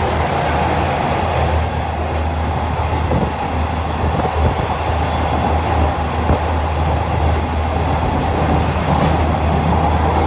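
Steady running noise of a trolley train heard from inside the car: a low rumble of wheels on the rails, with a few short knocks in the middle.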